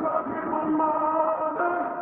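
A sung vocal line playing back as a sample, heavily filtered so it sounds muffled with its top end cut away, and washed in reverb. It holds a few sustained notes and runs through Goodhertz Lossy's Packet Repeat degradation while the loss amount is being turned down.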